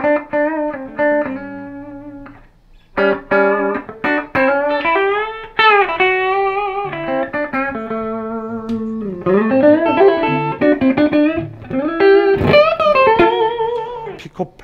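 Gibson SG Special T electric guitar with P-90 pickups, played clean through a Fender Super-Sonic amp: a run of single-note lines and chords with several string bends and a short pause about two seconds in. The tone is heavy in the bass, which the players put down to the SG's strong low-end resonance on the Fender amp with its bass turned up.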